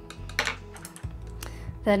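A few light clicks and taps of paintbrushes being handled and set down on a wooden table, over quiet steady background music.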